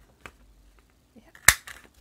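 A blue plastic craft circle punch snapping shut through a sheet of paper: one sharp, loud click about one and a half seconds in, after a fainter click near the start.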